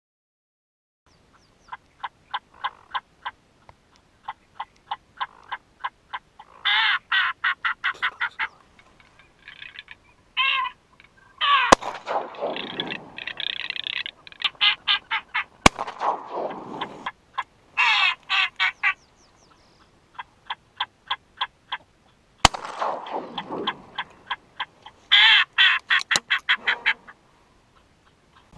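Duck quacking in repeated runs of rapid quacks, several a second, with three sharp cracks standing out louder among them.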